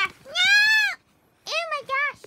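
A child's high-pitched wordless voice: one long rising-and-falling wail, then two shorter cries near the end.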